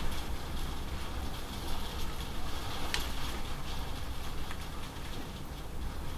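Steady heavy rain falling and running off the edge of a corrugated roof, with a sharper drip or splash about three seconds in.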